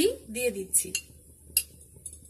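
Metal spoon scraping and clinking against a frying pan while stirring cooked rice, a few strokes in the first second and a sharp tap about one and a half seconds in.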